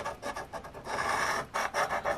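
A coin scraping the scratch-off coating from a lottery ticket in quick, uneven strokes, with one longer stroke about a second in.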